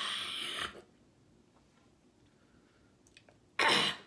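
A woman's two sharp, breathy exhalations through the mouth as she reacts to the heat of cayenne-spiced food: a hissing breath lasting under a second at the start, and a shorter, louder one near the end.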